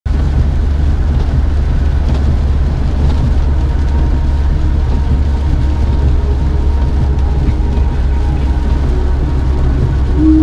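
In-cabin road noise of a 2012 Mahindra Scorpio with its 2.2 mHawk diesel, driving on a wet highway in rain: a steady low rumble with a hiss of tyres and rain above it.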